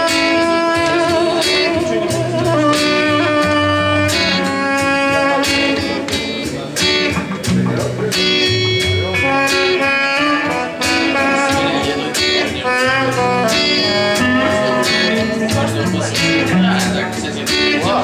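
Live band playing the instrumental introduction of a song: strummed acoustic guitar and electric guitar, with a melody that bends in pitch on a small hand-held wind instrument.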